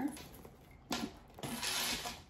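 A crossbody purse being handled and lifted: a sudden rustle about a second in, then a longer rustle of the bag and its strap near the end.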